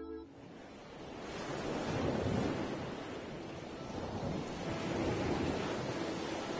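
Sea waves washing in and breaking against a rocky shore, the surf swelling about two seconds in and again near the end. A held music chord cuts off just as it begins.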